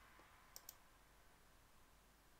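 Two quick computer mouse clicks about half a second in, selecting a year on the dashboard slicer; otherwise near silence.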